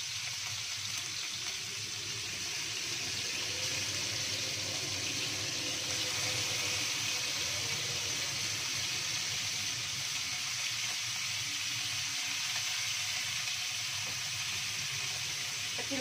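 Salted fish frying in hot oil in a wok: a steady sizzle, a little fuller from a few seconds in.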